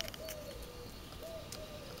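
A dove cooing over and over, each coo a short rise followed by a longer, slowly falling note, about one every second and a bit. A sharp click comes right at the start.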